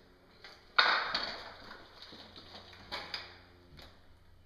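A sharp knock about a second in that rings briefly in a small bare room, followed by a few lighter knocks and clicks.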